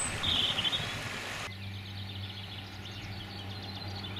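A shallow rocky stream rushing over stones, with a short bird chirp, for about the first second and a half. Then it cuts off suddenly, leaving quieter birdsong of quick repeated chirps over a steady low hum.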